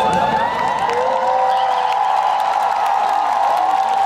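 Crowd cheering and whooping, with several long held calls overlapping.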